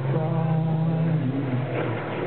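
Acoustic band playing live: acoustic guitars over an electric bass, with long held notes and a rising glide near the end.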